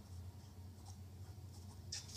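Faint pen scratching on paper, in a few short strokes over a steady low hum.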